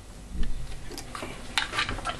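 Handling noise as multimeter test probes are pulled out of a wall socket and the meter is moved away: a dull thump about half a second in, then a run of light plastic clicks and knocks.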